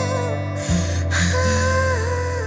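Slow background score: sustained low notes under a wavering melody line, with a breathy rush of noise about halfway through.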